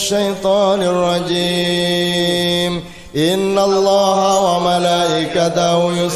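Chanted Arabic sholawat, devotional praise of the Prophet, sung in long drawn-out held notes, with a brief pause about three seconds in.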